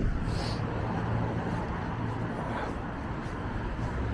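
Steady low rumble of road traffic in an urban street.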